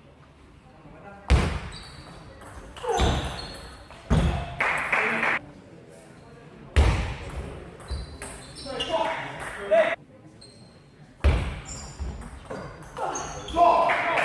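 Table tennis rallies in an echoing sports hall: the ball clicking off bats and table amid heavier thuds from the players' footwork, with loud shouts from the players around the middle and near the end as points are won.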